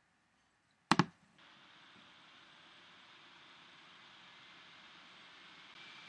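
A single computer mouse click about a second in, press and release close together, followed by faint steady hiss.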